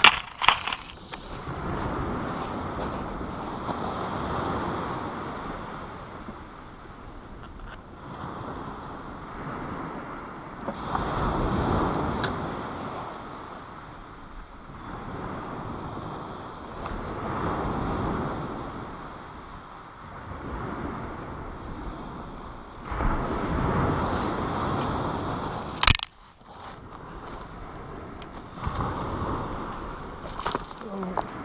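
Waves breaking and washing back over a shingle beach, swelling and fading every five or six seconds. A single sharp knock comes near the end.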